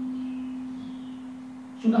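A single steady low pure tone that slowly fades through a pause in the talk, typical of a microphone and loudspeaker system ringing at one pitch. A man's voice comes back in near the end.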